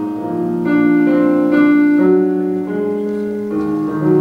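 Electric keyboard playing a slow instrumental passage of sustained chords, with the notes changing every half second to a second.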